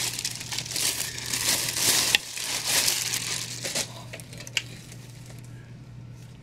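Clear plastic bag crinkling and rustling in irregular bursts as a heavy resin statue piece is worked out of it, dying down about two-thirds of the way through, with a couple of sharp clicks.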